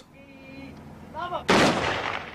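A single loud, sharp bang about a second and a half in, dying away over about a second, after faint voices that may be shouting.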